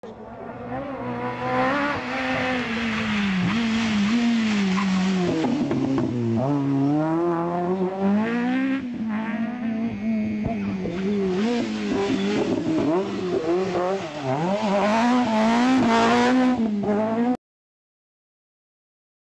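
Rally car engine at full throttle on a gravel stage, its pitch climbing and dropping again and again with gear changes and lifts. The sound cuts off suddenly near the end.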